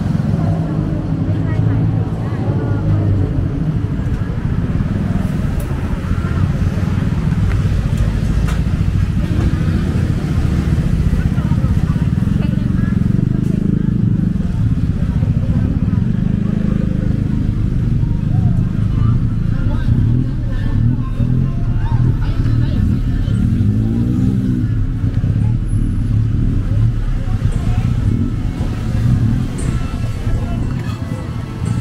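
Busy city street ambience: a steady rumble of passing road traffic, cars and motorcycles, with people talking nearby.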